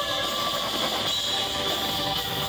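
Live band music heard from the audience: guitar and keyboards in a thin, sustained passage, where the held notes give way to an even hiss of stage and room sound.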